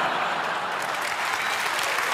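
Large theatre audience applauding: dense, even clapping that holds steady.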